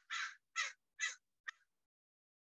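A crow cawing: a series of harsh caws about half a second apart, the last one short.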